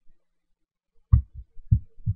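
Three short, dull, low thumps starting about a second in, close to the microphone.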